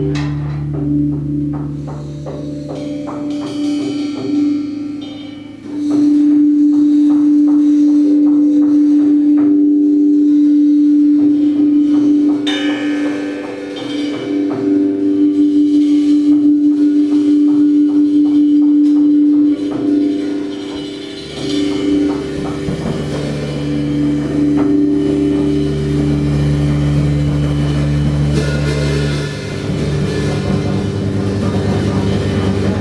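Small rock band of electric guitar, electric bass and drum kit playing a heavy riff together in a room, with long held notes. It gets much louder about six seconds in; the low bass notes drop out for a stretch in the middle and come back about two-thirds of the way through.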